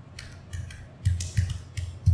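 Typing on a computer keyboard: a quick, irregular run of about eight keystrokes in two seconds, each a sharp click with a dull knock under it.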